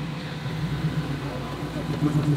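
A 1990s Ford Mustang's engine running at low revs as the car rolls slowly past, a steady low engine note.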